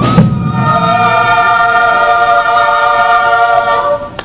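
Stage-musical chorus singing the held final chord of a song, with a percussion hit as the chord begins; the chord is held steady and cuts off just before the end.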